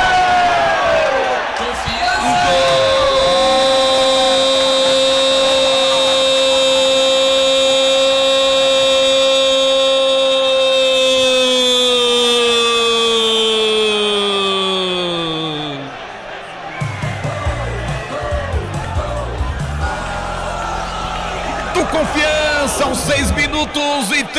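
Football commentator's long held goal shout, 'gooool', sustained on one pitch for about twelve seconds and falling away at the end. Music with a low, pulsing beat follows for the last several seconds.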